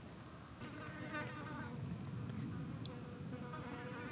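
Rainforest insects buzzing and trilling, with a steady high-pitched tone. Near the middle a thin, high whistle slides down in pitch and is the loudest sound.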